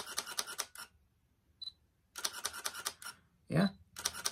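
Fujifilm GFX100 shutter firing in short rapid bursts: a quick run of sharp clicks in the first second and another about two seconds in. The camera keeps shooting without locking up while writing large RAW plus JPEG files to both cards.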